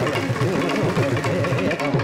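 Thavil and mridangam drumming in a dense stroke pattern, with a steady held note underneath.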